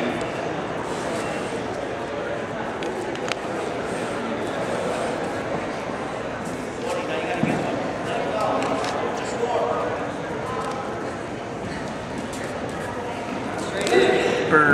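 Gym ambience: scattered shouts and calls from coaches and spectators around a wrestling mat, carrying in a large hall over a steady background hiss.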